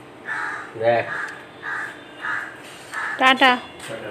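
Crows cawing in a series of about five short, harsh calls roughly half a second apart. A person's voice saying "aha, aha" a little after three seconds is the loudest sound.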